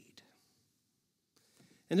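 A pause in a man's speech: near silence for about a second and a half, then he starts talking again near the end.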